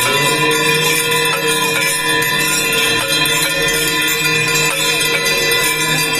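Ritual bells of the Ganga aarti ringing continuously in a dense jangle of rapid strikes. Under them a single low note starts right at the beginning and is held steady throughout.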